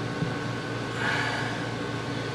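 A person's breath, a soft exhale about a second in, over a steady low room hum.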